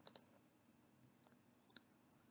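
Near silence: room tone with a few faint, short clicks, one just after the start and two more in the second half.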